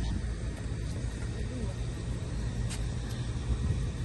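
Faint voices over a steady low rumble, with a single click almost three seconds in.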